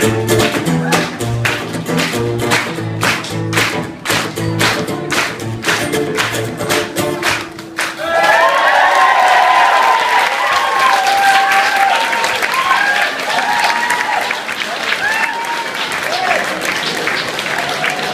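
Acoustic guitar strummed in regular strokes for about eight seconds, then breaking off into an audience applauding and cheering, with whoops over the clapping.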